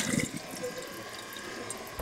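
Water running and trickling faintly and steadily in a stainless-steel sink.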